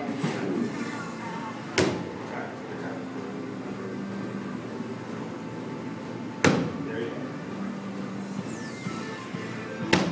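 Three sharp smacks of kicks landing on a padded kick shield, about two seconds in, about six and a half seconds in, and at the very end, the middle one the loudest, over background music.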